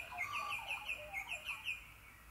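Birds chirping: one bird repeats a quick, downward-sweeping chirp about seven times a second, with softer, lower calls from another bird, stopping just before speech resumes.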